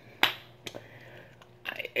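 A single sharp finger snap about a quarter second in, followed by a couple of much fainter clicks.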